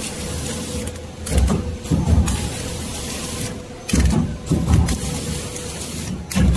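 Horizontal pillow-pack flow-wrap machine running while it wraps lettuce heads in film: a steady motor hum with a thin whine, under repeated low thumps that come in twos and threes every couple of seconds as it cycles.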